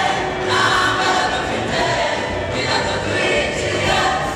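A choir singing a Christian song, many voices together.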